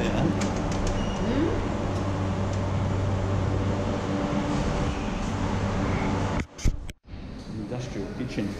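Steady low mechanical hum with a constant drone, and a few light clicks as a wooden door is pushed open near the start. The hum cuts off suddenly about six and a half seconds in, giving way to quieter room noise.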